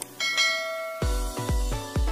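A subscribe-animation sound effect: a click, then a bright bell ding that rings out for about a second. About a second in, electronic dance music starts, with a steady kick-drum beat of about three beats a second.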